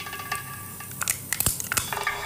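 Kitchen handling noises: soft crinkling and rustling, with a few sharp clicks about a second and a half in.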